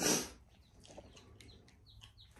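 Day-old chicks peeping faintly, a few short high falling peeps in the second half, after a brief breathy sound at the very start.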